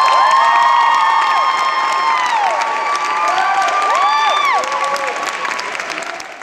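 Audience cheering and applauding at the end of a song, with clapping under several long, high-pitched screams and whoops; it eases off near the end.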